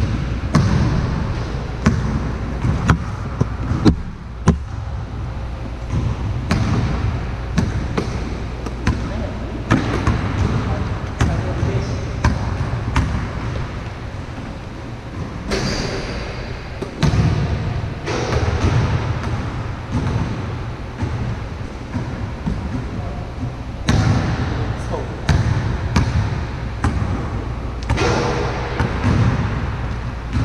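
A basketball bouncing on a court in uneven runs of sharp, single bounces, with players' voices now and then.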